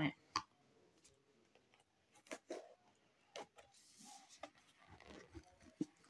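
Plastic protein-powder tub being opened by hand: a few faint, scattered clicks and knocks of the lid and container, with light rustling as the inner seal is peeled off.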